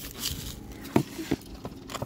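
A thin rod scraping and tapping against a plastic water jug and concrete: light scraping with two sharp clicks about a second in.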